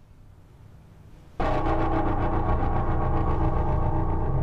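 Horror film score sting: a faint low rumble, then about a second and a half in a sudden loud, held chord of many tones over a deep rumble, as a dramatic reveal.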